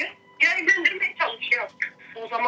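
Only speech: a woman talking over a telephone line, with a short pause near the start.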